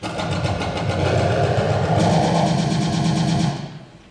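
A loud mechanical whirring rattle, made of rapid even clicks, that starts suddenly and fades out after about three and a half seconds.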